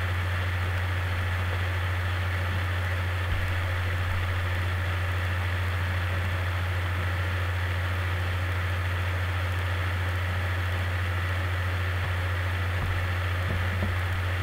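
Steady low hum with a faint even hiss, unchanging throughout: background noise of the recording setup.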